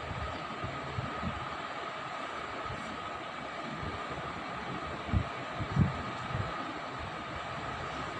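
Steady mechanical hum with a faint high whine, and a few short low thumps about five and six seconds in.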